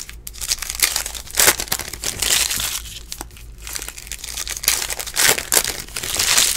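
A foil trading-card pack being torn open and its wrapper crinkled by hand, in irregular rustling bursts.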